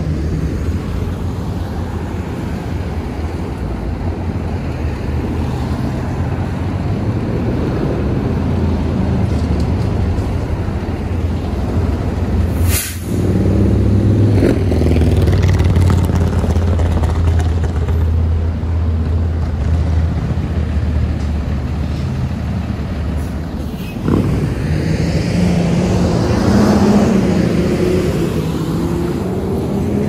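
City street traffic: a steady low rumble of car and truck engines, louder in the middle. There is a sharp click a little before the halfway point, and near the end an engine's pitch rises and wavers as a vehicle accelerates.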